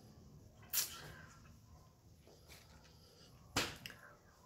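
Quiet room tone broken by two brief puffs of noise, one about a second in and one near the end.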